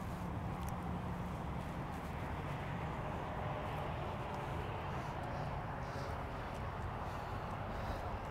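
Steady outdoor background noise with a low, even hum underneath and no distinct events.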